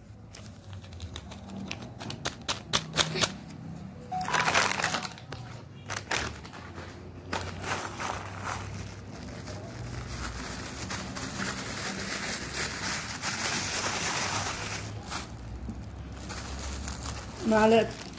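Paper sachets and a plastic bag being handled, crinkling and rustling, with a few sharp clicks and a longer stretch of rustling in the middle.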